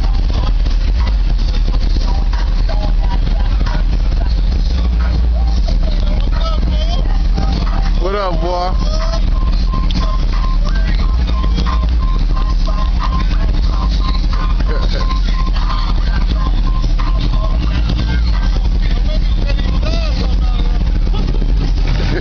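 Loud street noise from cars cruising slowly past: a steady low rumble, with indistinct voices and some music mixed in.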